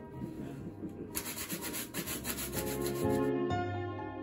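Shoe brush scrubbing a black leather shoe in quick, repeated back-and-forth strokes while polishing it. Background music comes in during the second half.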